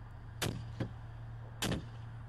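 A metal pipe striking a car's side window: three sharp bangs, the middle one fainter, and the glass does not break. A steady low hum from the idling car runs underneath.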